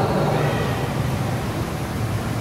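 Steady hiss and low hum of a large, reverberant church interior.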